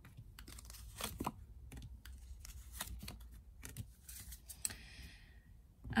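Tarot cards being handled and laid down on a table: a series of light taps and flicks of card stock, with a longer sliding sound between four and five seconds in.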